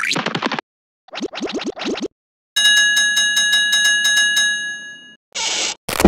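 Cartoon sound effects. First come two short runs of quick scratchy ticks. Then a fast chiming trill of bell-like tones rings out and fades, and near the end there is a short hiss-like burst and a sharp click.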